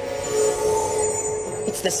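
Cartoon magic sound effect: a steady held hum with a fainter higher ring. A man's voice starts speaking near the end.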